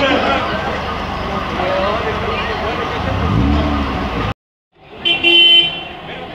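Busy street with many people talking as they walk and cars passing. The sound cuts out for about half a second a little after four seconds in, and a car horn then sounds briefly.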